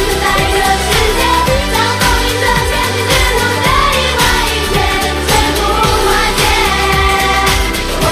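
Girl group singing a Mandarin pop song in unison into handheld microphones over a loud backing track with a steady drum beat.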